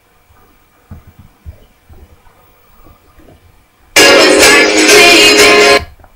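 Very loud recorded music starts abruptly about four seconds in and cuts off suddenly about two seconds later. Before it there are only a few faint soft knocks.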